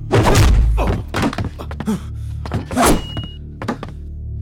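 Action-film fight soundtrack: background music under heavy punch and body-impact sound effects, a big hit right at the start and further hits about a second in, near two seconds and near three seconds.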